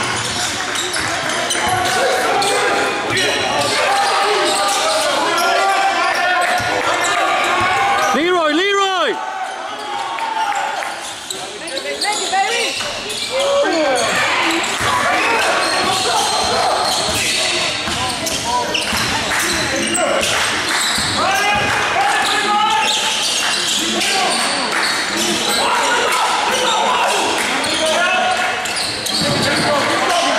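Basketball being dribbled on a hardwood gym floor during play, under indistinct shouts from players and spectators, all echoing in a large gymnasium. The din dips briefly about ten seconds in.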